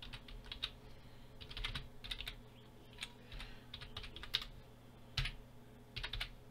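Typing on a computer keyboard: irregular runs of light key clicks with short pauses between them.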